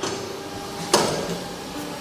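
A single sharp knock about a second in, over a faint steady hum.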